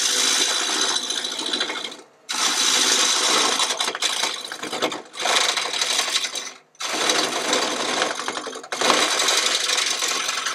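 Flat-nose scraper cutting a recess into a wooden disc spinning on a lathe: a harsh scraping noise in passes of about two seconds, broken by brief pauses as the tool lifts off the wood, about two, five and seven seconds in.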